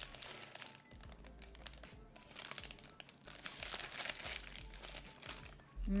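Paper wrapper crinkling in irregular rustles around a hotteok, a brown-sugar-filled Korean pancake, as it is held, bitten and chewed.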